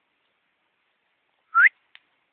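One short, rising whistle-like note, sudden and loud, about one and a half seconds in, after a stretch of silence.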